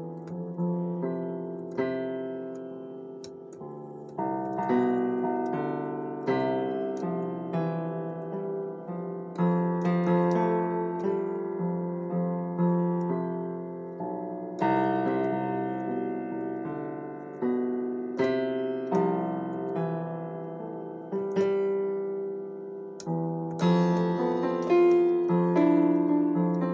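A keyboard instrument played in an unhurried improvisation: chords and single notes are struck and left to fade, and the phrases swell and drop back again and again.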